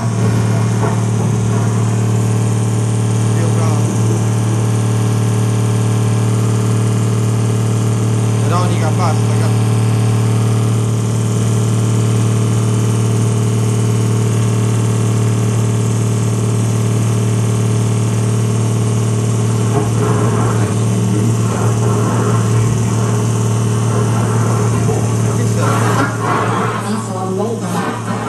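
A loud, steady low hum with a few higher overtones, unchanging throughout, with faint voice-like murmurs about eight seconds in and again near the end.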